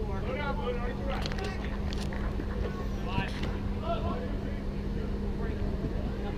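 Scattered distant voices of players calling and chatting, over a constant low hum and rumble, with a few brief clicks or knocks in the first half.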